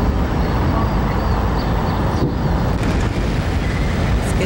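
Steady low rumble of city street and vehicle noise, with a brief dropout about two seconds in.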